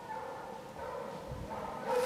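Pack of Penn-Marydel foxhounds baying, faint and steady, their voices blending into a chorus of held notes as the hounds open on a fox's trail.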